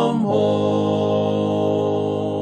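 Unaccompanied singing of a hymn, moving a moment in to the long held final chord on 'home' at the end of the refrain.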